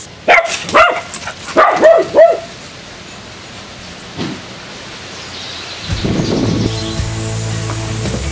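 A dog barking about five times in quick succession in the first two and a half seconds, each bark short and arching in pitch. Background music comes in about six seconds in.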